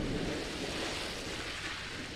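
Heavy splash of a body plunging into a swimming pool: a rush of churning water, loudest at the start and slowly fading.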